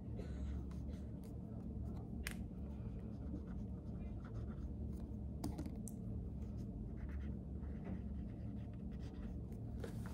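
Pen scratching on paper in short strokes as someone writes by hand, over a steady low room hum, with a few light clicks.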